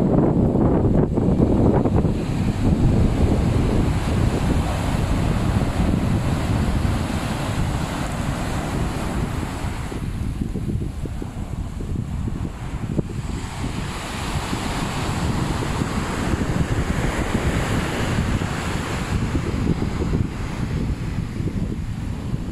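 Surf washing up on a sandy beach, with wind buffeting the microphone in gusts; the wind rumble is heaviest near the start.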